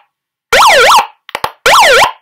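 Electronic siren from a handheld megaphone, sounded in short loud bursts about a second apart, each a quick wail that dips and rises twice. A couple of faint clicks fall between two of the bursts.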